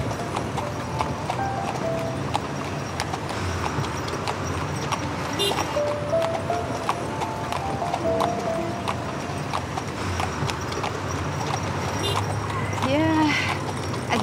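A horse's hooves clip-clopping on the road as it pulls a carriage through busy street traffic, with music playing over it.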